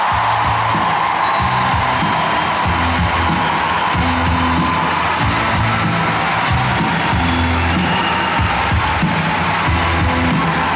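Music with a pulsing bass line plays loudly while a large audience in a big hall cheers and claps.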